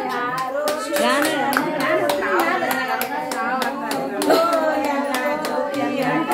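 Several women singing a naming-ceremony cradle song together, voices overlapping unevenly, with scattered sharp hand claps throughout.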